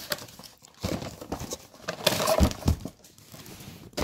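Cardboard box of a headlight restoration kit being opened and unpacked by hand, with irregular rustling and crinkling of cardboard and packaging and a few light knocks as the contents are set down.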